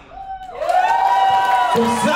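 The dance music cuts off, and a person lets out one long, high whoop of cheering that rises and is then held for about a second. A short bit of speech follows near the end.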